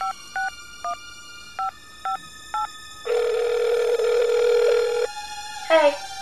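Phone keypad touch tones: six short two-note beeps as a number is dialled, then a single ringback tone lasting about two seconds as the call rings through. A brief voice comes in near the end.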